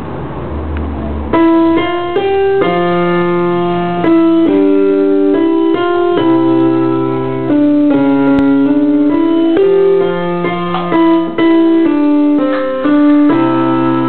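Piano played by a young child: a slow tune of single held notes over a lower bass line, starting about a second in.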